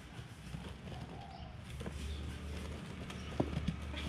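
Street-market background: a steady low hum with faint distant voices, and a couple of sharp knocks about three and a half seconds in.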